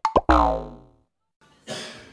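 A cartoon 'boing' sound effect, a springy twang that falls in pitch and dies away within about a second. Near the end there is a short burst of noise.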